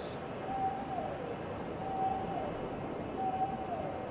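Quiet ambient background track under a pause in the narration: a soft hazy drone with three brief held tones at about the same pitch, each sliding down at its end, spaced a little over a second apart.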